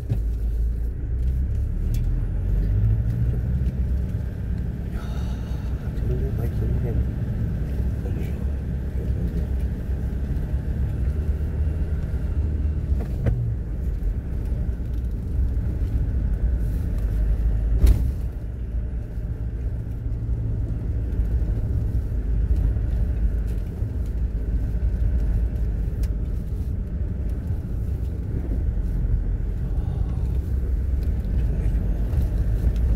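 Car driving slowly along a narrow concrete lane, a steady low rumble of engine and tyres. There is a single sharp knock a little past halfway.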